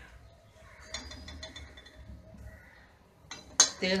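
Steel kitchen utensils clinking: a quick run of light metallic taps with a brief high ring about a second in, then a few fainter taps, and one sharper knock near the end.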